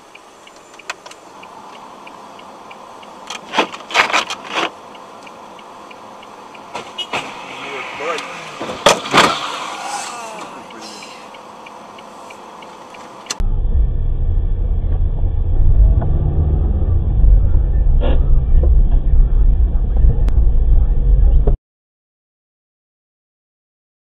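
Car dashcam audio: several sharp bangs about 3 to 5 seconds in and again near 9 seconds. Then an abrupt switch to a loud, steady low rumble of a car on the move, which stops suddenly near the end.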